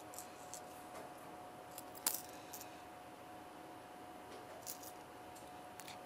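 Faint, scattered small clicks and light jingles of a tape measure and a ballpoint pen being handled on a workbench, with one sharper click about two seconds in.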